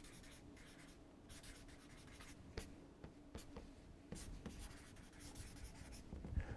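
A marker pen writing a line of words: faint scratchy strokes and a few light taps against a near-silent background.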